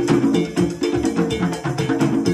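An ensemble of hand-played conga drums with timbales and a cowbell, playing a fast, dense, steady rhythm.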